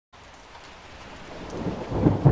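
Steady rain falling, growing gradually louder, with a low rumble of thunder building in the last half second.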